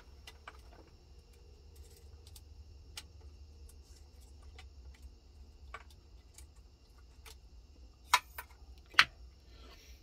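Small metal drill bits clicking and rattling as they are handled in a metal wire-gauge drill index, in scattered light ticks with a few sharper clicks about eight and nine seconds in, over a faint steady hum.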